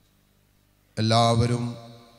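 Near silence for about a second, then a priest's voice chanting a Malayalam liturgical prayer on a steady, level pitch.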